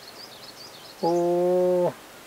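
Faint small-bird chirps, then a drawn-out vocal "ohh" held on one steady pitch for about a second.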